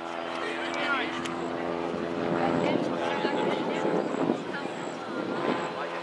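Players calling and shouting to one another across an outdoor soccer field, with a steady droning hum beneath the voices.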